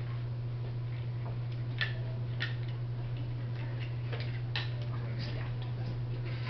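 A steady low hum with a few faint, irregular light clicks scattered through.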